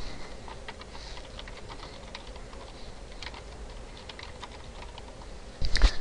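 Typing on a computer keyboard: a run of light, irregular keystrokes.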